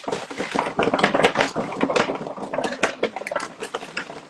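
Paper rustling and crinkling, dense and irregular, as a hand rummages through folded slips of paper inside a paper gift bag.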